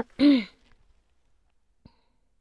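A woman's brief voiced sound, a short throat-clearing or 'hm'-like vocalisation lasting about a third of a second just after the start, then near quiet with a faint click near the end.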